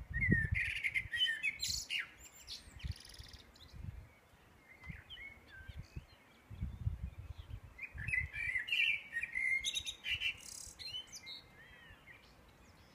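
Songbirds singing, in two bouts of quick, warbling phrases with a quieter stretch between them. Low rumbles sit underneath near the start and again around the middle.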